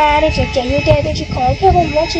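A young woman speaking: dialogue in Hmong.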